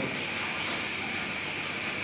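Steady, even background hiss of the recording with no other events: a pause in the talk.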